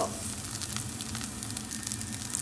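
Hot olive oil from a jar of sun-dried tomatoes sizzling steadily in a frying pan, with light crackles.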